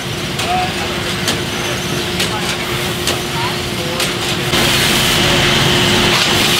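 Bakery bun-line machinery running: a steady mechanical hum with scattered clicks and clacks, joined about four and a half seconds in by a louder, steady hiss.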